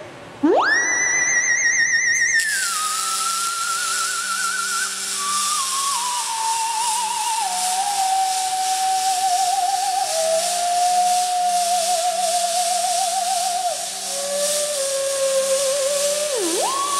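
Moog Etherwave theremin swooping up sharply to a high note with vibrato about half a second in, then sliding down in steps to a lower, wavering note. From about two and a half seconds in, a steady hiss from the robots' welding arcs runs underneath.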